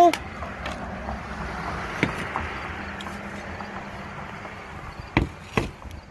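Glass and plastic knocking on a glass-topped table as a Pyrex glass bowl and a plastic pumpkin scoop are set down and handled: one sharp knock about two seconds in, then two more close together near the end, over a low steady rush.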